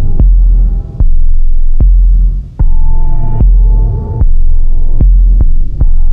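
Loud experimental electronic music. A deep sub-bass throb pulses on and off about every second and a half, with a sharp click at each edge, over a buzzing pitched drone.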